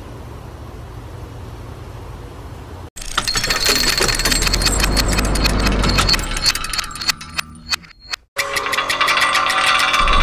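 A low, steady outdoor rumble, then after a sudden cut the loud sound effects of an animated gear-logo intro: a deep rumble under fast metallic clicking and ratcheting. A brief drop-out comes about eight seconds in, then more rapid clicks with ringing tones.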